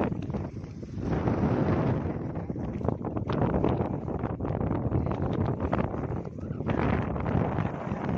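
Wind buffeting the microphone on an open boat at sea, a steady rushing noise with many short crackles through it, with water splashing against the boat.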